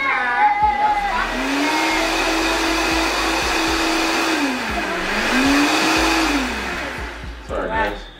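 Countertop blender blending a smoothie. The motor spins up about a second in, drops in pitch once midway and spins back up, then winds down near the end.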